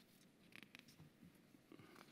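Near silence: room tone with a few faint rustles and soft clicks at the lectern microphone, about half a second in and again near the end.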